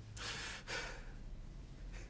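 A man crying: two shaky, gasping breaths in the first second, with no voice.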